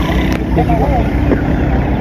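Men's voices talking and laughing briefly over a steady low rumble.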